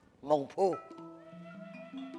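A voice on stage calls out two drawn-out syllables with swooping rises and falls in pitch. Steady held notes of the accompanying music follow.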